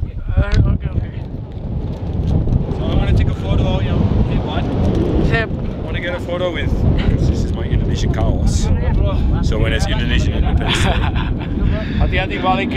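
Mountain-top wind buffeting the microphone, a loud steady low rumble that runs under voices talking at intervals.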